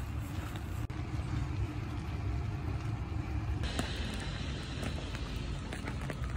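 Rainy outdoor ambience on a wet street: a steady low rumble under a hiss of rain and wet pavement, and the hiss turns brighter a little past halfway through.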